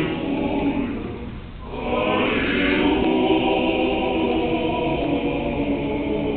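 Male choir singing an unaccompanied Russian Orthodox hymn in sustained chords. The sound softens briefly about a second and a half in, then swells back fuller and louder.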